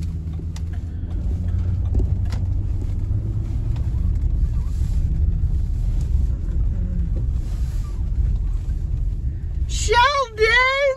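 Low, steady engine and road rumble heard inside a car's cabin as it is driven slowly, with a few faint clicks. Right at the end a high, wavering voice-like sound begins.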